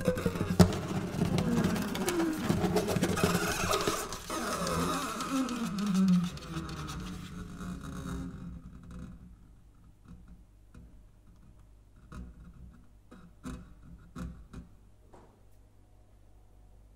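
Acoustic guitar played fingerstyle, its closing notes bending up and down in pitch and ringing out, dying away about eight seconds in. After that only faint scattered clicks remain.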